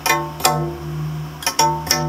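Homemade electric string instrument, strings stretched across a wooden board, plucked: about five sharp, ringing notes, two of them close together near the end, over a steady low drone.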